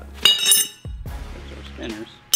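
A sharp metallic clink with a bright ringing tail, about a quarter second in, over background music.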